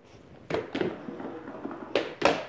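Heelys heel-wheel shoes on a hard indoor floor: a sharp knock about half a second in and another near the end, with rolling, scraping noise between them as the wearer glides.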